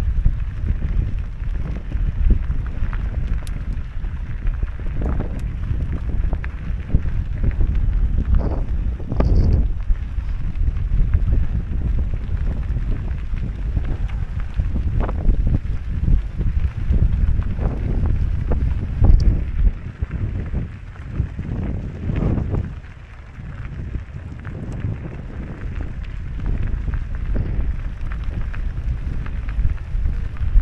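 Wind buffeting the microphone of a camera on a moving mountain bike, over the rumble of knobby tyres rolling on a loose gravel track, with scattered rattles and knocks as the bike jolts over stones. It eases off briefly about two-thirds of the way through.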